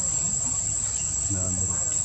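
Steady, high-pitched insect drone, like cicadas or crickets, with a person's voice heard briefly about a second in.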